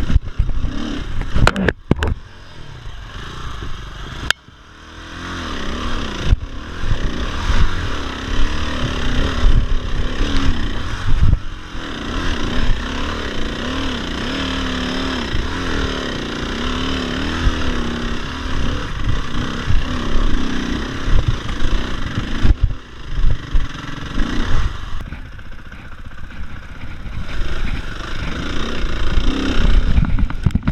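Dirt bike engine running and revving on the move, its pitch rising and falling with the throttle, with knocks and clatter from the bike over a rough trail.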